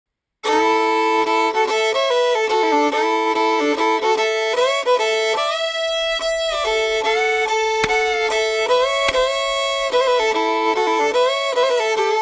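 Solo fiddle playing a slow country melody with sliding notes, starting about half a second in.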